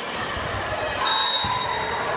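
Indoor volleyball game sounds with a ball thud, then about halfway through a referee's whistle blows one steady blast of about a second.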